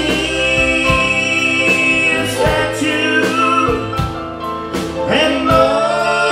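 Live country band playing the chorus of a ballad once more, a male lead voice singing over electric and acoustic guitars.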